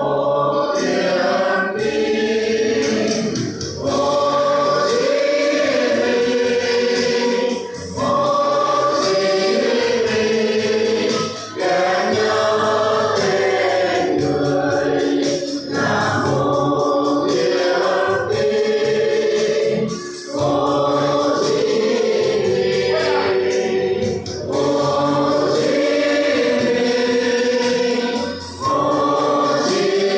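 A mixed group of men and women singing a song together in unison, the phrases broken by short breaths about every four seconds.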